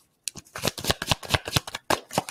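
Tarot deck shuffled by hand: a quick run of short card slaps, about eight a second, starting a moment in.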